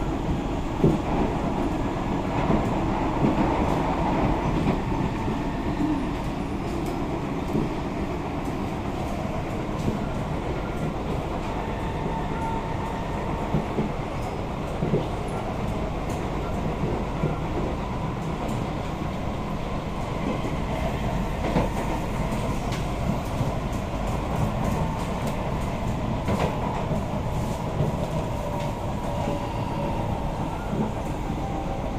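Kawasaki–CRRC Qingdao Sifang C151A metro train running between stations, heard from inside the carriage: a steady rumble of wheels on rail, with occasional sharp clicks.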